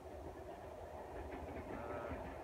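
Wind buffeting the microphone outdoors: a steady, low, fluttering rumble with a rushing hiss over it.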